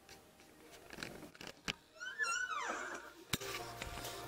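A door hinge creaking in one short squeal that rises briefly then falls, followed by a sharp click of the latch as the door is shut, with a few small clicks and knocks before it.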